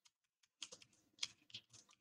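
Faint computer keyboard typing: a scattered run of quiet, short keystrokes.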